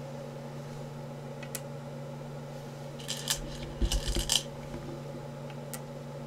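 Go stones clicking as they are handled and set down on a wooden Go board: a lone click, then two short clusters of sharp clacks about three and four seconds in, the second with a dull thud, over a steady low hum.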